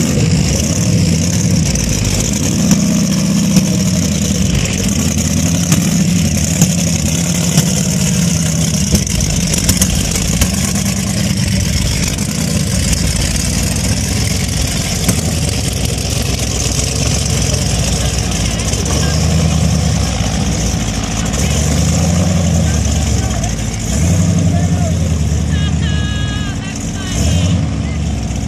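A mud-covered Jeep-style 4x4's engine revving hard as it churns through a deep mud pit, its pitch rising and falling with the throttle over several seconds, with dips near the end.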